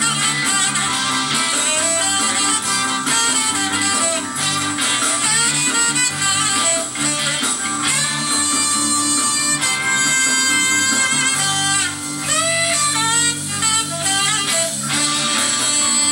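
A live band playing: electric guitar, trumpet and saxophone over drums and a steady bass line, heard through a television's speaker.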